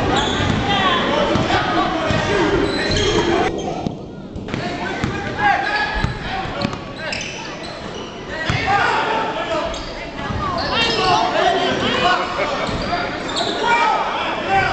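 Basketball bouncing on a hardwood gym floor during play, the knocks echoing in a large gym under voices from players and spectators.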